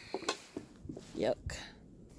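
A wooden gate being handled and opened: a few light clicks early on, then a sharper knock about one and a half seconds in.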